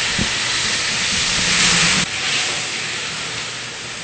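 Red wine sizzling and hissing as it boils hard in a hot aluminium pot around a browned beef shank, being cooked off. The hiss is steady and eases a little about halfway through.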